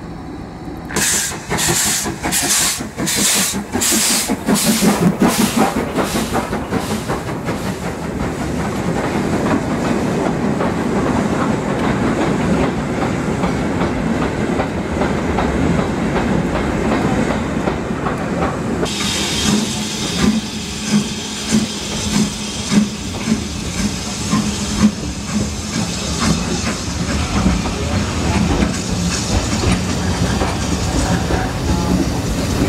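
A steam-hauled train passing close by. At first there are rhythmic steam exhaust beats, about two a second, then the rumble of the wagons rolling past. From about two-thirds of the way in there is a steady hiss of steam with regular clickety-clack of wheels over rail joints.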